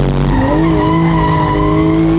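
Porsche 911 GT3 RS's naturally aspirated flat-six engine heard from inside the cabin as the car is drifted. The note dips, then climbs about half a second in and holds steady under throttle, with the tyres squealing.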